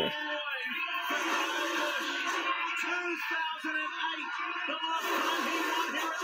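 Stock-car race broadcast playing from a television speaker in a small room: a continuous, even sound with pitched tones that waver up and down, which a tagger hears as music-like.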